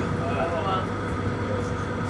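A steady low rumble with a light hiss under it, no pitch and no strokes: the running background noise aboard the cruise boat.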